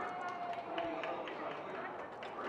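Indistinct voices of people talking, over open-air ambient noise with a few scattered light clicks.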